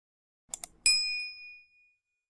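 Subscribe-animation sound effect: two quick clicks, then a bright notification bell ding that rings out and fades over about a second.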